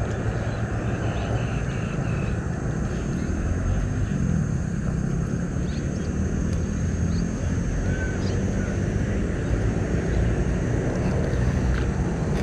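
Steady low rumble of wind buffeting the camera microphone, with a few faint high chirps about two-thirds of the way through.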